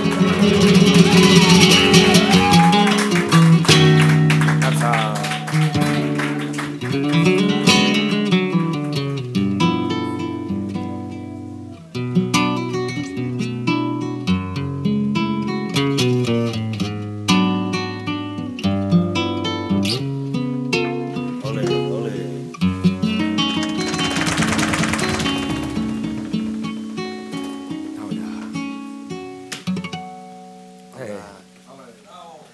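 Live flamenco: a flamenco guitar playing plucked and strummed passages over sharp percussive strikes from heeled footwork on the stage and the cajón, with a singer's voice in the first few seconds. About three-quarters of the way through a dense wash of noise swells and fades, and the music dies away near the end.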